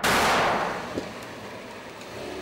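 A single pistol shot: a sharp crack that rings out and fades over about half a second, with a faint click about a second in.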